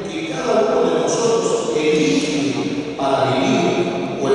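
Speech only: a man speaking into a podium microphone, his voice amplified.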